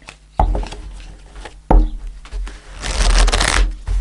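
A tarot deck shuffled by hand: a sharp onset about half a second in, another knock just under two seconds in, then a longer rush of riffling cards about three seconds in.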